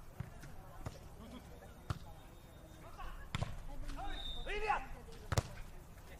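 Hand-on-ball contacts in a beach volleyball rally: a few sharp smacks of the ball, the loudest about five seconds in, with short shouted calls from the players a second or so before it.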